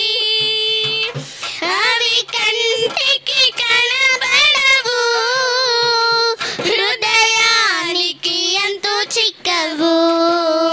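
Two young girls singing a devotional song together into microphones, holding long notes and sliding between them.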